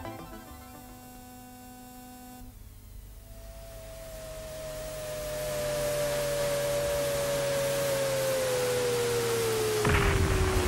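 Electronic sound effect of a toy spaceship coming in to land: a single whistle that falls slowly in pitch over a hiss that swells and grows louder, after a couple of seconds of faint held tones.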